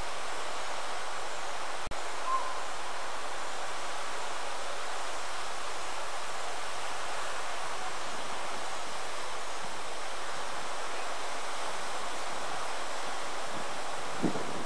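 Steady rushing outdoor noise, with no rhythm or tone in it, and one sharp click about two seconds in.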